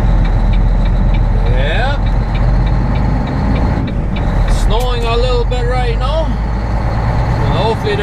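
A semi-truck's diesel engine running, heard from inside the cab as a steady low rumble while the truck drives off. A wavering, voice-like sound comes in over it around the middle and again near the end.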